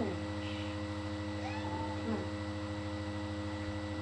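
A domestic cat meowing, with one drawn-out meow about a second and a half in and a fainter one earlier. These are the protesting calls of a cat being put into a bathtub. A steady electrical hum runs underneath.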